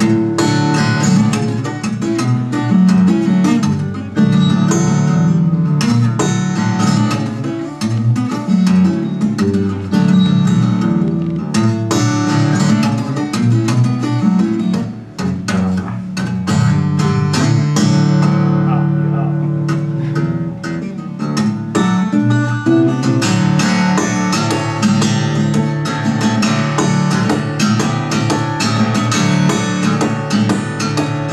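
Solo fingerstyle acoustic guitar: clear bass notes under a busy melody, mixed with percussive hits on the guitar, at a steady tempo.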